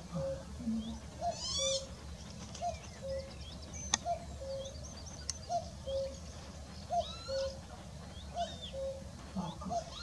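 Male common cuckoo calling its two-note "cuck-oo", a higher note then a lower one, repeated steadily about every second and a half, some seven times. Small songbirds chirp in the background, and there are two brief sharp clicks midway.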